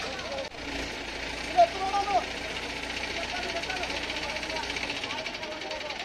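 Men's voices shouting and calling out, the loudest shout about one and a half seconds in, over the steady running of a vehicle engine that drops away near the end.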